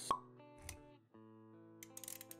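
Intro music with held electronic notes, broken just after the start by a sharp pop sound effect, the loudest thing here, and a softer low thump a little later.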